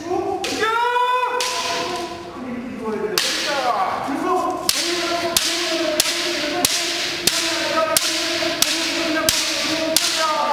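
Bamboo shinai strikes in a kendo yeon-gyeok (kirikaeshi) drill. From about five seconds in there is a run of about nine sharp clacks, evenly spaced a little over half a second apart, as the striker alternates blows left and right. They sound over long, held kiai shouts.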